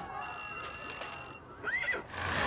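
Cartoon sound effects: a high, steady ringing tone lasting about a second, then a brief rising-and-falling squeal near the end.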